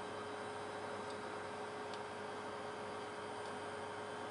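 Steady electrical hum with one constant tone, and a couple of faint ticks.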